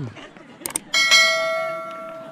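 A couple of quick mouse-click sound effects, then about a second in a bright bell ding that rings on and fades over the next second or so. This is the notification-bell chime that goes with an animated subscribe-button overlay.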